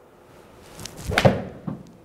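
A golf iron swung through at full speed, its swish building up before the club strikes the ball off a hitting mat about a second and a quarter in, with a sharp crack. A softer knock follows about half a second later.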